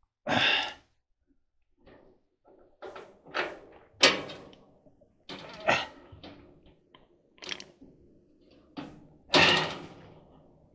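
Knocks and thunks from a clothes dryer's metal door being worked and shifted on its cabinet to seat it, since the door clip is broken: a string of separate hits, the loudest about four seconds in, with longer louder bursts of noise just after the start and near the end.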